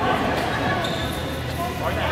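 Several people's voices talking in an indoor sports hall, with a few short sharp knocks, likely shuttlecock hits or bounces on the court.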